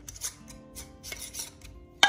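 Metal screw band being twisted onto the threads of a glass mason jar of maple syrup: a run of short rasping, scraping strokes, with faint background music.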